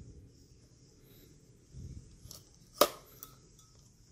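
Spinning fishing reel handled in the hands: quiet rubbing and shifting of the reel body, a few light clicks, and one sharp click about three quarters of the way through.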